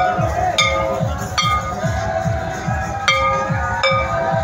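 Music with a steady, fast drumbeat, over which a metal bell is struck about five times at uneven intervals, each strike ringing briefly.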